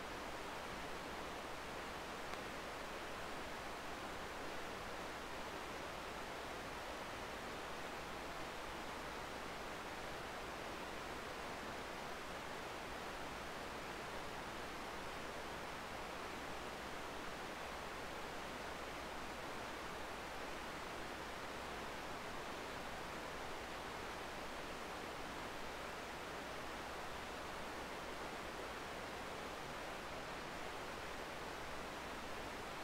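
Steady hiss from the sound system or recording feed, with a low hum underneath and nothing else.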